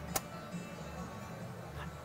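One sharp metallic click from the top latch of a vertical rod panic exit device as it is worked by hand at the head strike. After it, only a faint low background.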